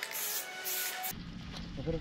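Aerosol spray-paint can hissing in two short bursts. About a second in the sound cuts to a low wind rumble on an action-camera microphone.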